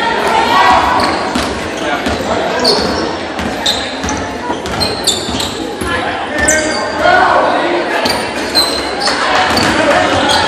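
Basketball being dribbled on a hardwood gym floor, with spectators talking and calling out, and short, high sneaker squeaks scattered throughout, all echoing in a large gymnasium.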